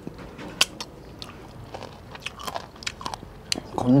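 A man chewing a mouthful of rooster curry close to a clip-on microphone: irregular wet smacks and clicks of the mouth. A word is spoken just at the end.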